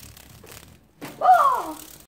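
A young girl's wordless exclamation about a second in: one loud call that falls in pitch. Before it there is a faint rustle of handling.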